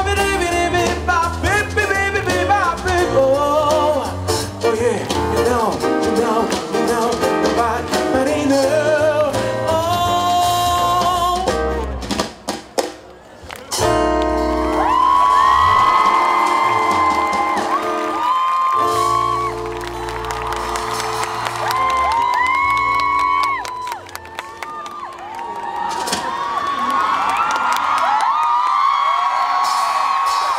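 Live band playing a song: a singer over electric bass, acoustic guitar and drums. The music thins almost to a pause about twelve seconds in, then the singing comes back with long held notes.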